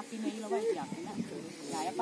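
Speech: a person talking, with a short pause in the middle.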